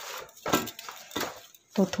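Hand kneading soft, oiled wheat dough in a steel plate: a few irregular squishing, pressing strokes, with light contact on the metal.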